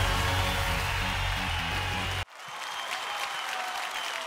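Television show theme music with a heavy bass, cut off suddenly a little over halfway through. Clapping and applause from the studio follow.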